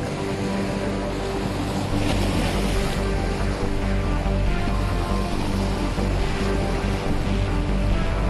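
Background music with long held tones, over the wash of sea waves breaking on a rocky shore.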